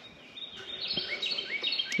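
Songbirds singing: several high, clear notes overlapping, with a short upward-rising call repeated three times in the second half.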